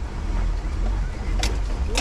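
1987 Toyota Land Cruiser engine lugging at low revs under throttle as a clutch is let out, heard from inside the cab as a deep rumble, with the truck bouncing from too little gas. There are two sharp clicks near the end.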